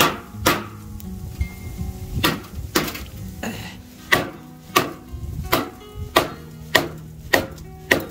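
Thick ice frozen in a stainless-steel basin being struck with a stick, about a dozen sharp knocks roughly every half second to a second, cracking the ice.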